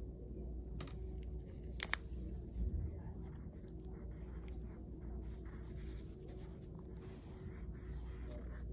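Steady low room hum with small handling noises on a table: two sharp clicks about one and two seconds in, then a soft thump.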